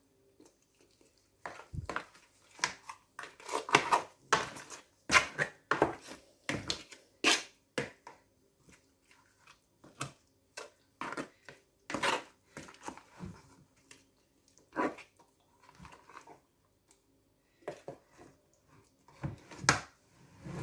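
Plastic spoon stirring catfish pieces through a thick, wet seasoning paste in a plastic bowl: irregular short strokes of mixing and scraping with brief pauses.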